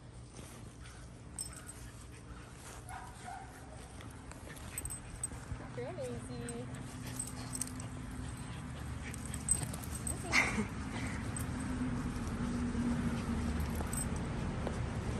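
Two dogs playing, a Nova Scotia duck tolling retriever puppy and an older dog, with a short whimper about six seconds in and one sharp yelp about ten seconds in.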